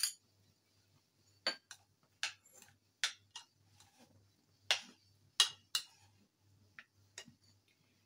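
A metal spoon clinking and knocking against a mixing bowl as chopped tomato, onion and mashed potato are stirred together, about a dozen short, irregular clinks.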